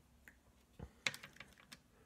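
Several quick, faint clicks and taps, bunched about a second in, from a paintbrush being loaded with new colour at a plastic watercolour paint tray.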